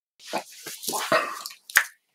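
A few short clicks and rustles close to the microphone, then one sharp snap near the end.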